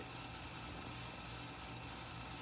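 Faint, steady outdoor background noise: an even hiss with a low hum under it and no distinct event.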